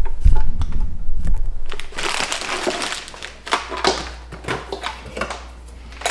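Plastic and metal parts of a tower grow-light fixture clattering and knocking as it is handled and fitted, with heavy low thumps of the camera being grabbed and moved over the first two seconds.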